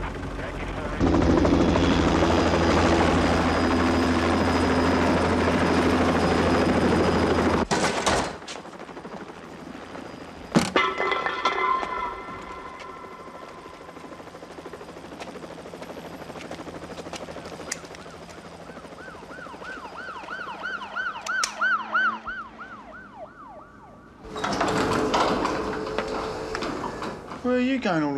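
A police siren yelping in fast, evenly repeating rising-and-falling sweeps for a few seconds in the second half. Before it comes a loud steady noise with a low hum for the first several seconds, then a single sharp knock; another loud burst of noise follows the siren near the end.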